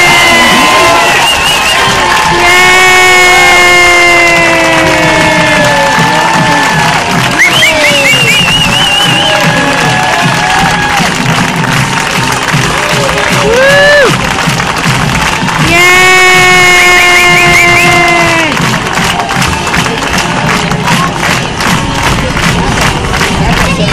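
Crowd cheering and whooping, with several long held calls of about two seconds each, slightly falling in pitch, rising over the noise, and a wavering high whoop about halfway through.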